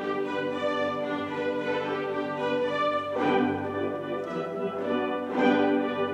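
Youth string orchestra playing sustained bowed chords, with two strongly accented strokes about three seconds in and again near the end.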